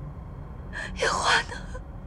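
A woman crying: a short sobbing breath, then a longer tearful gasp about a second in.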